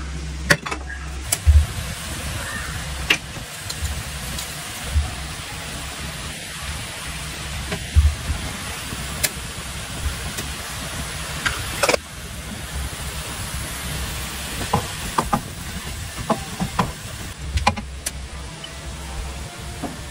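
Minced meat and leeks cooking in a frying pan: a steady hiss and low hum, with scattered knocks and scrapes of a wooden spatula against the pan.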